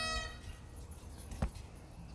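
Bagpipes, their held drone and last note cutting off about a quarter second in. Then only a low outdoor hum remains, with a single sharp click about a second and a half in.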